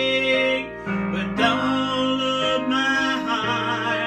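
A gospel song sung with long held, wavering notes over a steady instrumental accompaniment with guitar.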